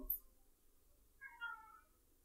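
Quiet room tone with one faint, brief, high-pitched squeak of wavering pitch about one and a half seconds in.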